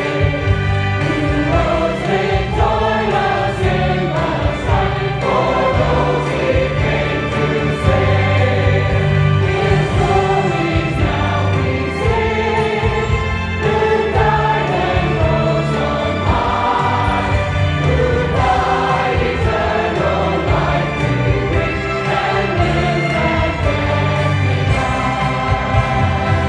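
Choir singing a gospel song over instrumental accompaniment with a strong, steady bass.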